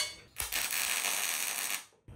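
MIG welding arc laying a single tack weld: a steady crackling hiss that starts about half a second in, holds for about a second and a half, and stops suddenly when the trigger is released.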